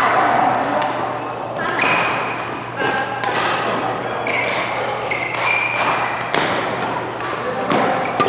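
Badminton rally: sharp racket strikes on the shuttlecock at irregular intervals, roughly one a second, each echoing in a large hall, with short squeaks of court shoes on the sports floor in between.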